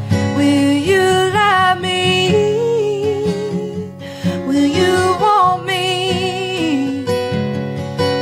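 A woman singing a slow country melody over strummed acoustic guitar, her voice wavering with vibrato on held notes.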